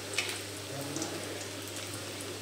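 Pakora batter frying in hot oil in a kadhai: a steady sizzle with a couple of sharp crackles.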